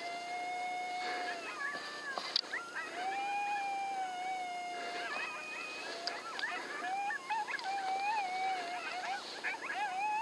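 Coyote howls and yips: long drawn-out howls held at a nearly steady pitch, then rapid, wavering yips from about six seconds in, as used to call a coyote in.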